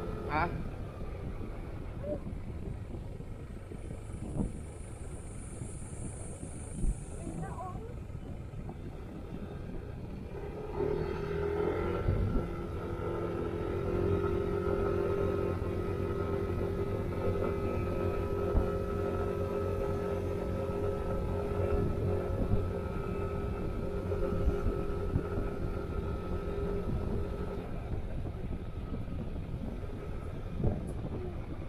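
Motor scooter's engine running steadily at road speed, with wind noise on the microphone. About a third of the way through, the engine note grows louder and holds there.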